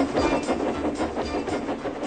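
Trains rolling along the track with a steady rattling clatter, with faint music underneath.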